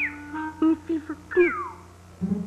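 Animated dog character whining and yipping: a falling whine at the start, short yips, then a louder falling whine about a second and a half in, over soft background music.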